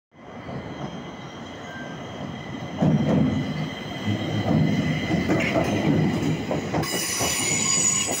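Stockholm metro C20 train arriving at a platform: wheel and running noise growing louder as it comes in and passes close by, with high-pitched wheel squeal setting in about seven seconds in.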